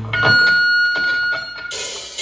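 A steady high-pitched ringing tone from the stage amplification, typical of guitar or PA feedback, holds for about a second and a half. Near the end it gives way to a bright wash of cymbal noise as the rock band kicks in.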